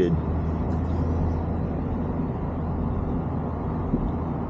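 Engine and road noise heard from inside a vehicle's cab while it drives slowly: a steady low hum.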